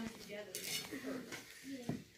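Faint clicks and rubbing of a phone being handled against wooden stall boards, with a sharper knock near the end and faint voices.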